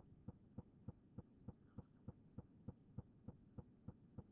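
Near silence with a faint, even ticking, about three ticks a second, over a low hum.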